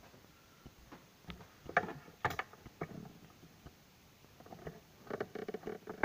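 Faint scattered clicks, knocks and rattles of handling close to the microphone, with a few louder knocks about two seconds in and a burst of them near the end.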